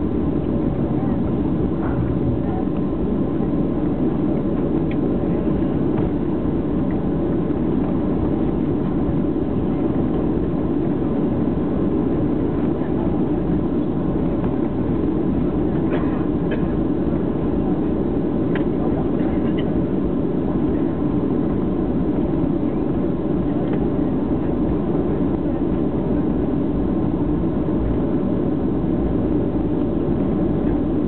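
Cabin noise of a Boeing 737-700 rolling on the ground after landing: a steady rumble of engines and wheels heard from a window seat over the wing.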